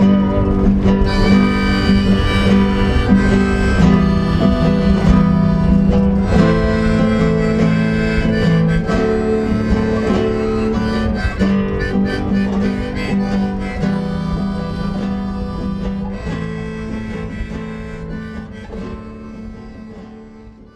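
Harmonica playing held chords over a strummed and plucked acoustic guitar in a folk tune, fading out over the last few seconds.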